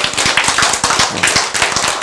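Audience applauding: a roomful of people clapping their hands, dense and steady.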